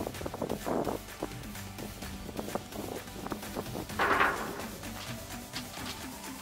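Background music with a steady beat, with a louder brief rush of noise about four seconds in.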